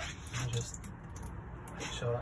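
A caravan's cold tap running a thin stream into a stainless steel sink, with a low steady hum from the onboard water pump underneath. The water is being run to purge air from the system before the boiler is used.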